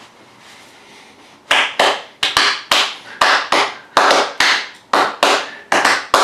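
A person clapping hands, a run of sharp claps at about three to four a second, slightly uneven, starting about one and a half seconds in.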